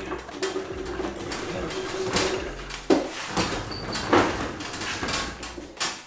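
Old steel diesel fuel tank from a VW T25 being handled onto a wheeled metal trolley. A steady squeak lasts about two seconds, followed by several scrapes and knocks of the metal tank.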